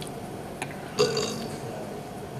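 Quiet hall room tone broken about a second in by one short, throaty vocal sound, like a brief grunt or throat-clearing.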